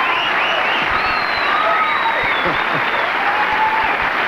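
Studio audience applauding steadily, with high voices calling out over the clapping.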